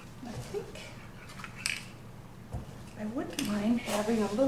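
Three short hissing spurts from an aerosol can of Krylon webbing (marbleizing) spray, each lasting well under a second, the last one the longest and loudest, near the end.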